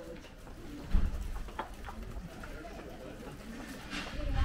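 A bird cooing softly, with faint street murmur. About a second in, a sudden low thump turns into a rumble.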